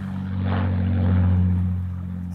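Avro Lancaster bomber's four piston engines droning low as it passes over. The steady drone swells to a peak past the middle and then begins to fade.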